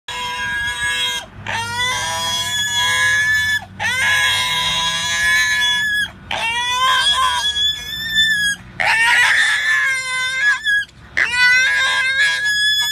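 Pot-bellied pig squealing as it is held and handled: about six long, high-pitched squeals in a row, each one to two seconds long with short breaks between.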